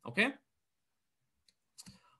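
A man's voice says "okay", then near silence, broken by a few faint clicks near the end.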